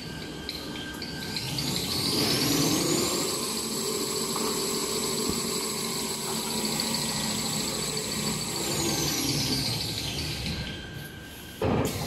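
Toilet paper rewinder machine speeding up with a rising whine about two seconds in, running steadily at speed, then slowing with a falling whine near ten seconds. Regular ticking comes before the run-up, and a sudden loud burst of noise comes near the end.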